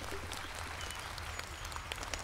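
A steady, even patter of many small claps, like applause heard at a distance.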